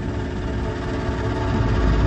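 Small boat motor of a wooden river canoe running steadily at a constant pitch, with a low rumble that grows louder near the end.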